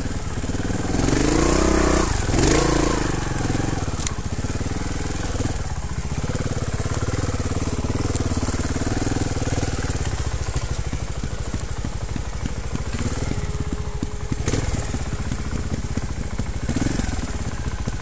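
Single-cylinder trials motorcycle engine running steadily at low revs, with a couple of short rises and falls in pitch in the first few seconds.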